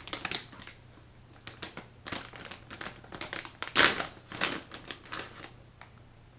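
Plastic dog-treat pouch crinkling in short bursts as it is handled and reached into, loudest about four seconds in.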